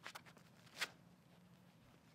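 Faint scuffing of a disc golfer's footsteps on the tee during the run-up, then one sharp snap about a second in as the driver is ripped from the hand on release.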